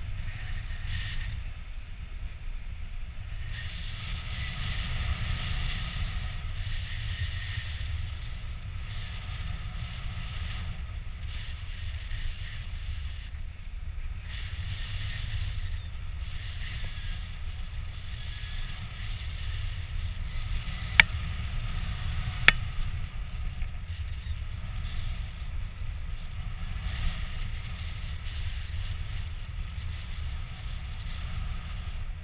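Wind rushing over an action camera's microphone in paraglider flight: a steady low rumble with a hiss that swells and fades. Two sharp clicks come about two-thirds of the way through.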